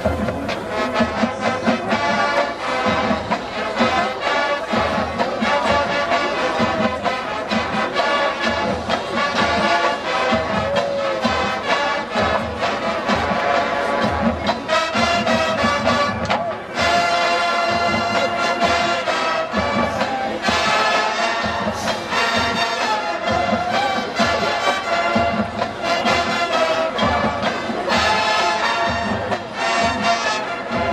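College marching band playing a rock medley: brass section over a drumline of marching bass drums, snare drums and tenor drums keeping a steady beat.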